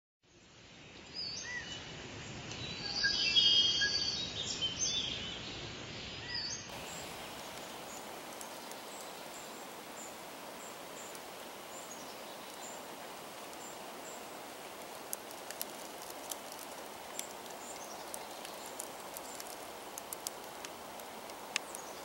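Woodland outdoor ambience: a steady faint hiss with scattered small clicks and tiny high blips. In the first six or so seconds a separate, duller-sounding clip of high-pitched calls plays over it, loudest around three to four seconds in, and it cuts off abruptly.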